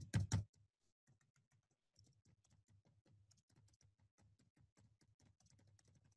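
Typing on a computer keyboard: a few loud clacks right at the start, then quieter rapid key clicks from about two seconds in.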